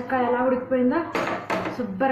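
Metal ladle clinking against the inside of a pressure cooker twice, about a second in, as thick cooked dal is stirred, under a woman's talking.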